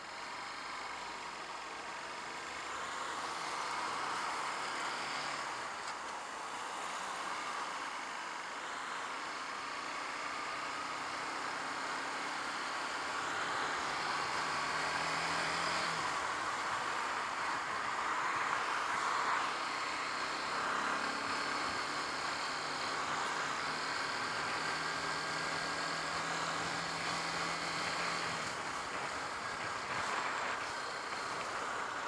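A Honda CBF125's 125cc single-cylinder engine is running on the move. Its faint note holds steady for a few seconds at a time, breaking off about halfway through and again near the end. A steady rush of wind and road noise on the microphone is louder than the engine throughout.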